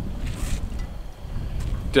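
A steady low rumble with a brief rustling noise about half a second in.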